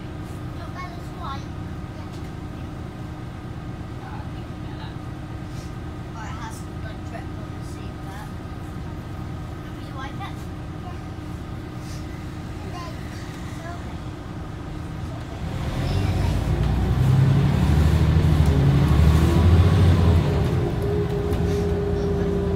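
Scania OmniCity bus heard from inside the cabin: the engine runs low and steady with a faint steady whine, then about two-thirds of the way through the bus pulls away and the engine grows louder, its pitch rising as it accelerates.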